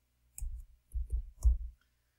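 Computer keyboard keystrokes: about four short, sharp clicks as a number is typed into a spreadsheet cell.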